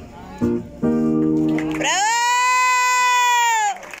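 Live acoustic guitar and female voice closing a song: after two shorter notes, the voice slides up into a long, high held note of about two seconds that cuts off just before the end.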